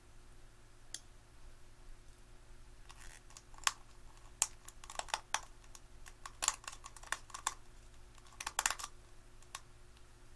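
Thin metal spatula clicking and scraping against a plastic lip-colour tube and a clear plastic tray while lipstick is dug out: irregular sharp little clicks, few at first and coming thick from about three seconds in to near the end.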